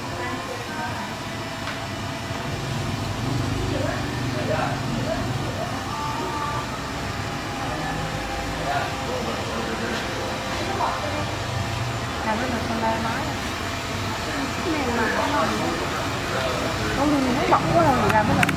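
Indistinct background voices over a steady low hum, with faint music; no distinct cutting or blade sounds stand out.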